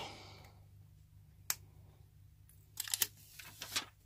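Fingernail picking at and peeling a protective plastic film off a clear hard plastic phone case back: one sharp click about one and a half seconds in, then a cluster of crackly clicks near the end as the film comes away.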